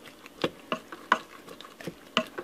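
Masher pressing down into cooked rice, chicken and pinto beans in a pressure cooker's metal inner pot: a few short, separate squelching knocks, about one every half second.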